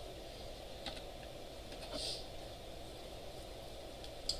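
A few separate keystrokes on a computer keyboard as code is typed, with a short hiss about halfway through, over a steady low room hum.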